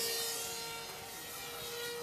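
Radio-controlled model airplane flying past with a high-pitched engine whine that fades and falls slightly in pitch as it moves away.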